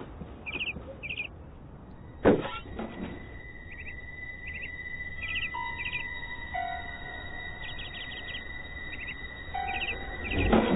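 A small bird chirping in short quick clusters, again and again, over soft background music with long held notes. One sharp thump a little over two seconds in is the loudest sound.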